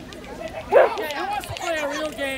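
Several people's voices overlapping in loose outdoor chatter, with one short loud yelp about three-quarters of a second in.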